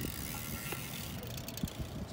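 A road bike's freewheel ticking as the bike coasts, with a quick run of sharp clicks about a second in, over outdoor background noise.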